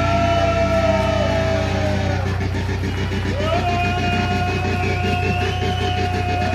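Live heavy metal band in a slow passage: long sustained electric guitar notes, each bent up into at the start and held about two seconds, over a steady low bass drone.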